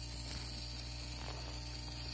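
Small geared DC motor with a shaft encoder running steadily at about 6.2 volts, giving a low, even hum.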